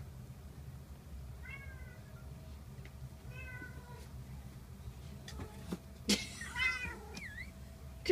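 Young kittens mewing in short, high-pitched calls, faint at first and loudest about six seconds in, with a brief chirp just after. A few soft knocks come shortly before the loudest mew.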